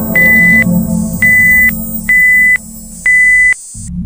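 Four loud, high electronic beeps, each about half a second long and roughly one a second apart, over background music. All sound drops out briefly just before the end.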